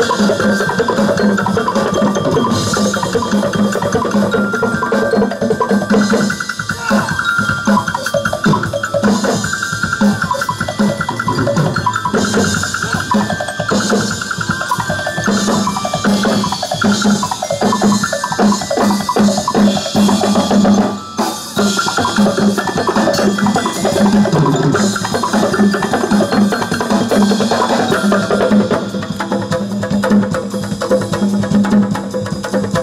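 Live percussion ensemble: drum kit, timbales and other drums struck together in a fast, steady rhythm over a pitched melodic part, with a short break about 21 seconds in.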